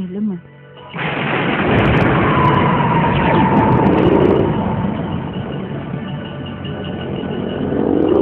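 A sudden loud rush of noise comes in about a second in and carries on as a heavy, steady rumble, with a thin whistling tone sliding slightly down through the middle: a dubbed blast-like sound effect in a film.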